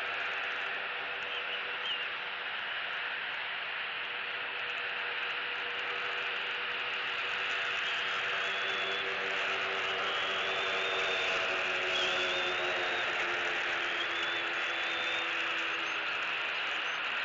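Outdoor ambience: a steady hiss with a distant engine drone that grows louder over the second half, and a few faint, thin chirps above it.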